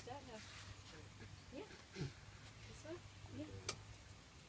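Quiet, scattered talking voices over a steady low hum, with one sharp click near the end.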